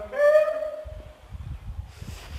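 A man's voice calls one long, drawn-out hoot-like note, held at one pitch for under a second. It is followed by irregular low thuds of footsteps and handling noise as the phone is carried at a run.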